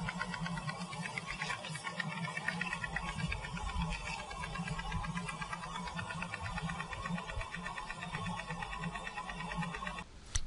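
Pulsed electromagnetic therapy loop on a horse's leg, giving off a steady, rapid, even pulsing buzz as the machine fires.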